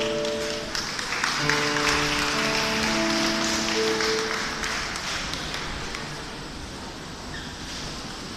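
Audience applauding at the end of a choral piece, with a few held musical chords sounding under the clapping; the applause dies down in the second half.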